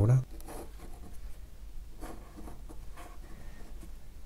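Fine-tip ink pen drawing a continuous line on textured watercolour paper: faint, light scratching strokes of the nib. The end of a spoken word is heard at the very start.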